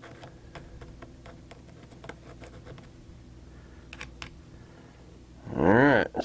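Small screwdriver scraping and picking thick, tar-like grime out of a radio-control truck's differential case, a run of light irregular scratches and clicks with two sharper clicks about four seconds in, over a faint steady hum. A voice starts near the end.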